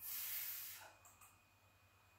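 A woman voicing the 'fff' phoneme, a breathy hiss held for under a second.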